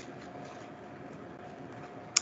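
Faint steady hiss with a thin constant tone: the background noise of a video-call microphone, with no distinct sound event.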